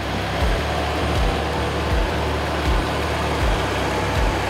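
A Fendt tractor pulling a trailed Grimme potato harvester runs past close by: a steady low engine drone under a broad, even clatter and rush of machinery noise. A regular low thud comes about every three-quarters of a second.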